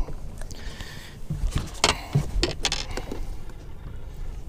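Scattered clicks and knocks of handling aboard a small fishing boat while a caught crappie is held and moved, the sharpest knock about halfway through, over a steady low rumble.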